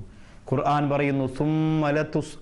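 A man's voice speaking, with a brief pause at the start and one long, steadily held vowel in the second half.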